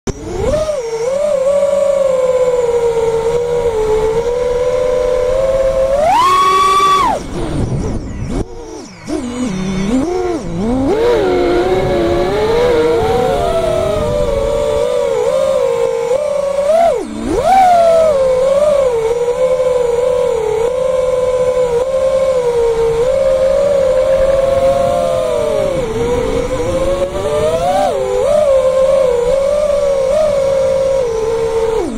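Small FPV quadcopter's electric motors whining, their pitch rising and falling with the throttle. There is a sharp rise to a high whine about six seconds in, then a brief drop and a few smaller swings.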